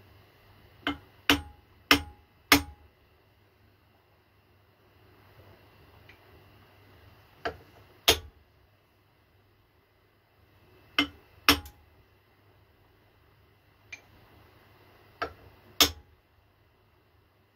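Sharp metallic clicks as the angle-iron workpiece in the shaper vise is pressed down and rocks at its right back corner, a sign that this corner is not sitting flat on the parallel beneath it. Four clicks come in quick succession about a second in, then pairs of clicks every few seconds.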